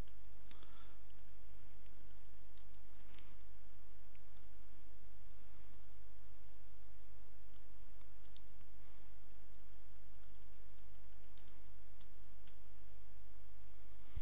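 Computer keyboard keys clicking in irregular runs as code is typed, over a steady low hum.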